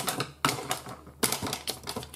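Paper and lace trim being handled and moved on a plastic craft mat: three short bouts of rustling with light clicks and taps.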